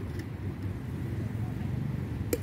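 Steady low rumble of outdoor background noise, with a faint click right at the start.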